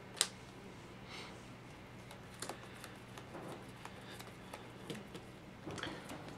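Plastic-sleeved trading cards being handled on a table: scattered soft clicks and slides as cards are picked up and laid down, with one sharper click about a quarter second in.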